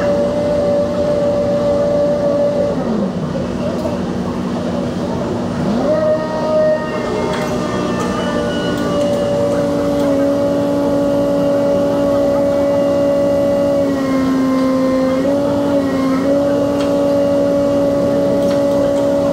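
An engine running steadily with a humming tone that steps up and down in pitch a few times, with voices in the background.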